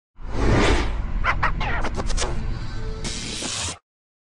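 Channel-logo intro sting made of sound effects and music: a whoosh, a quick run of sharp hits, then a hiss, over a deep low rumble, cutting off suddenly just before the end.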